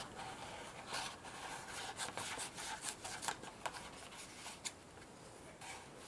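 Scissors cutting through a sheet of craft foam: a run of faint, irregular snips that falls quiet near the end.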